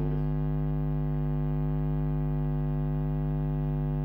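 Steady electrical mains hum: a constant low buzz made of many evenly spaced tones.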